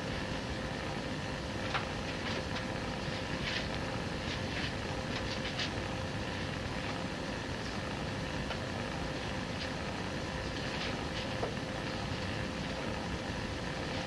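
Steady background hiss and hum of an old sermon recording, with a few faint scattered clicks and rustles.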